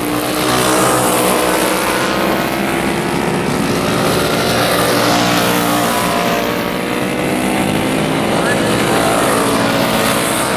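Several vintage racing go-karts with flathead single-cylinder four-stroke engines running at race speed, more than one engine at once, their pitch rising and falling as the karts pass and work through the corners.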